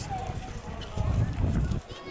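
Outdoor background voices of people talking, over an uneven low rumble that swells about a second in.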